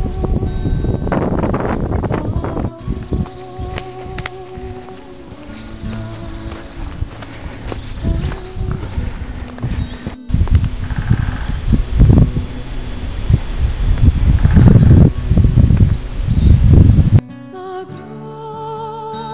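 Wind rumbling in gusts on the microphone, with knocks and footfalls, and a woodpecker heard faintly among the trees. Background music comes back in near the end.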